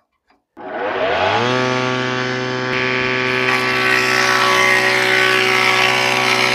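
Electric motor of a bench woodworking machine fitted with a rebating cutter starting up about half a second in: a whine rising in pitch over about a second, then settling into a steady hum with many overtones. From about three seconds in a harsher hiss joins it as a board is milled for a quarter (rebate) joint.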